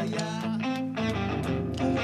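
Rock band playing live, led by strummed electric guitars over bass guitar, with the bass moving to a new low note about halfway through.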